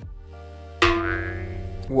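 A cartoon sound effect: a sudden pitched tone that starts about a second in with a short falling glide, then holds steady for about a second, over faint background music.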